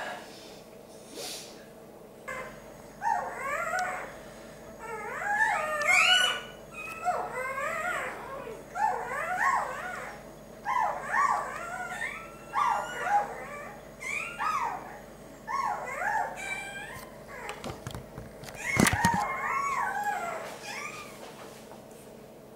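Newborn puppy crying: short, high squeals that rise and fall, coming in repeated bouts through most of the clip. A brief knock is heard near the end.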